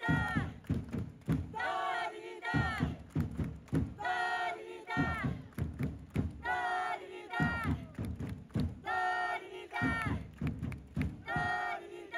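Football supporters' chant with drums: a short sung phrase repeated about every two and a half seconds, with drum beats in between.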